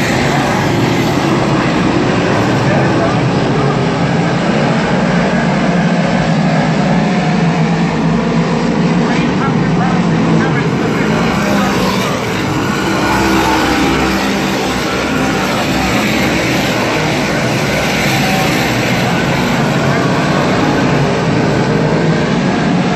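A pack of 358 modified dirt track race cars running at racing speed, their V8 engines making a loud, continuous drone that rises and falls as the cars pass.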